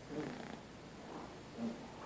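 Soft, brief fragments of a low voice in short bursts, with pauses between, over faint room noise.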